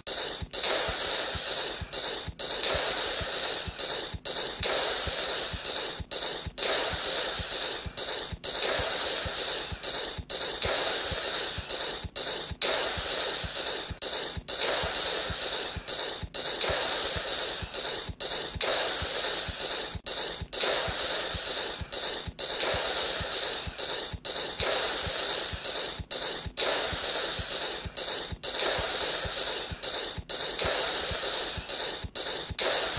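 Loud, steady hissing noise like static, strongest in the treble. It is cut by brief, sharp dropouts that recur in a regular pattern, repeating about every two seconds.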